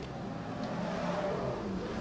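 Two-stroke motorcycle engine running, picking up revs and getting louder about half a second in.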